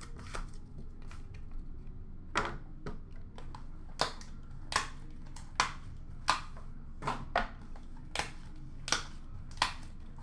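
Trading cards and their tin being handled by hand, with short crisp clicks, a few at first and then a regular one about every three-quarters of a second from about four seconds in.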